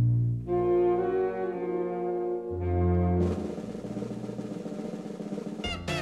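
Brass band playing long held chords over low brass notes, with a louder low note about halfway through, then a sustained drum roll. A different piece of music, led by guitar, cuts in near the end.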